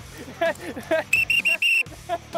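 A referee's pea whistle blown in four quick blasts, the last slightly longer, a shrill steady tone signalling a yellow card.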